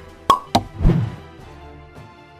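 Outro graphic sound effects: three quick pops in the first second, the last with a low thud, over quiet background music.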